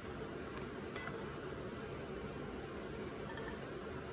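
Kitchen tongs setting broccolini down on a plate: two faint light clicks about half a second and a second in, over a steady room hum.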